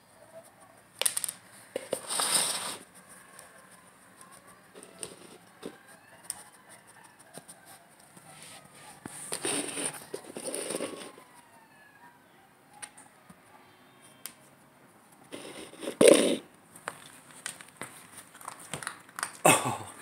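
A clear plastic container scraping and knocking on a wooden floor as a Border Collie puppy paws and noses at it to get a treat underneath, in several short bursts with pauses between.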